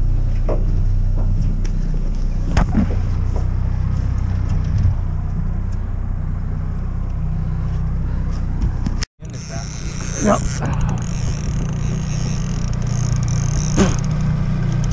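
Yamaha outboard motor running steadily at low trolling speed, a low even rumble heard from inside the boat's enclosed cabin. After an abrupt cut about nine seconds in, the same motor is heard closer at the stern, with a higher whine over the rumble.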